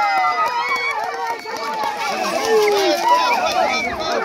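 A crowd of many people shouting and calling out at once, their voices overlapping with no break.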